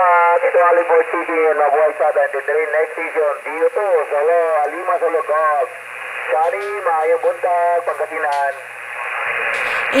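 Amateur radio operators' voices on a 40-metre net, received on a Kenwood HF transceiver's speaker in single sideband. The voices sound thin and narrow over background hiss, and are an example of skip-signal reception. The talk pauses near the end, and the receiver hiss rises.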